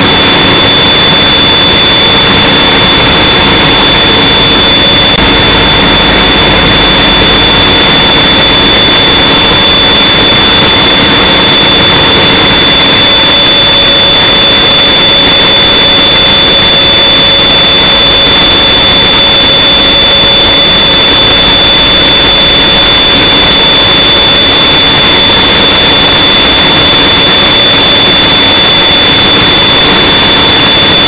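Heavy machinery on an offshore platform running steadily and very loudly, with a constant high-pitched whine over the noise.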